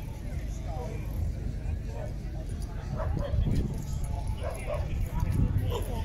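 Wind buffeting the microphone over outdoor crowd chatter, with a dog barking a few times in the second half.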